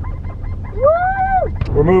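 A single high-pitched vocal call, like a child's 'woo', about a second in; its pitch rises and then falls. Under it runs the steady low rumble of a car cabin in traffic.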